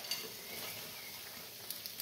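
Faint, steady sizzle of tikka curry sauce cooking in a frying pan as mixed vegetables are tipped in on top, with a couple of light clicks near the end.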